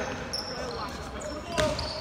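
Basketball dribbled on a hardwood gym floor, with a sharp bounce about three-quarters of the way through, and sneakers giving short high squeaks on the court.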